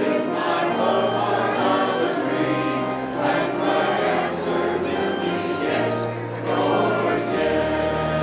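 Church choir singing a hymn in parts over instrumental accompaniment, with sustained bass notes that change every second or two.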